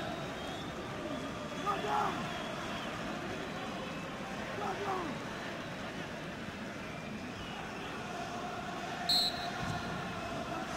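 Steady stadium crowd noise with scattered faint voices and calls. Near the end, a short blast of the referee's whistle signals that the free kick may be taken.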